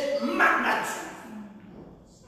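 A person's voice calling out loudly with a rising pitch about half a second in, then fading away into the hall's echo.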